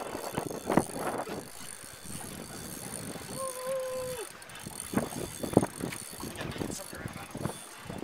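Spinning reel being worked during a fight with a hooked redfish, its mechanism clicking and whirring under a freshly tightened drag, with a few knocks. A short steady tone is held for about a second a little over three seconds in.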